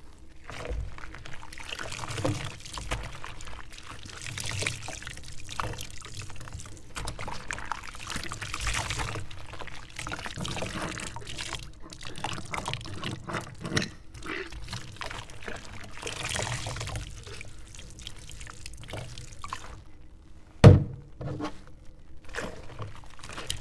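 Glass mason jars being washed by hand in soapy water in a stainless-steel sink: water sloshing and a cloth scrubbing the glass in swelling strokes, with small clinks throughout. Near the end comes one loud knock of a jar against the sink.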